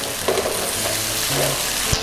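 Pork and red curry paste sizzling steadily in a nonstick wok, with a silicone spatula stirring and scraping through the sauce.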